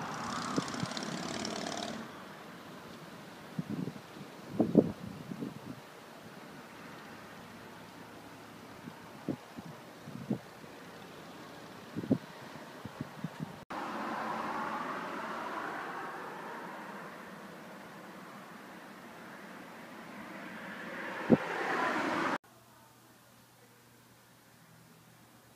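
Outdoor background noise: a steady rush that fades and then swells again, with a few scattered knocks and taps.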